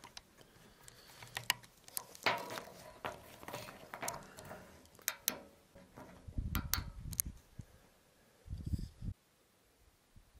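Handling noise as a Dobsonian telescope with a camera on it is pushed around by hand: scattered light clicks and knocks, with two short low rumbles about six and a half and nine seconds in.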